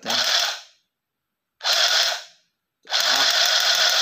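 Handheld battery-powered stitching machine, running on four AAA cells, buzzing with a rapid needle clatter in three bursts as its button is pressed. The first two bursts are short, and the third starts just before three seconds in and keeps going.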